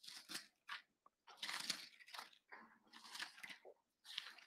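Bible pages being leafed through: a run of faint, dry paper rustles and crinkles, one after another, as the pages are turned to find a passage.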